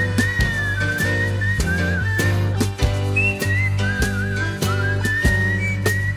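A whistled tune wavering up and down over a band's accompaniment of bass, pitched instruments and a regular drum beat.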